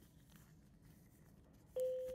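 Near silence, then near the end a single steady beep-like tone starts abruptly and slowly fades.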